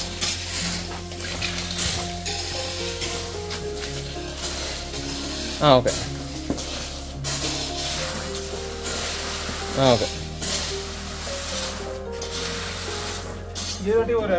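Wooden rake dragging crushed stone gravel across a plastic ground sheet, repeated scraping strokes as the gravel is spread level.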